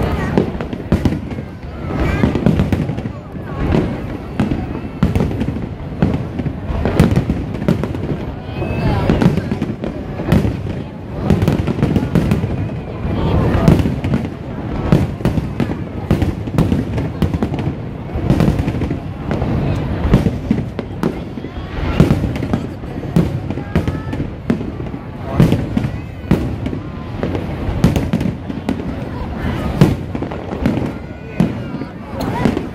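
Aerial fireworks shells bursting overhead in rapid, irregular succession: a steady run of bangs and crackles, several a second at times, with no letup.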